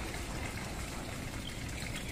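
Small fountain in a garden pond, water splashing and trickling steadily.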